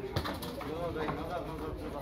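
Distant voices calling across a football pitch, with a short knock about a fifth of a second in.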